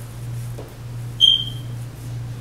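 A steady low hum, with one short, high-pitched ping a little over a second in that fades within about half a second.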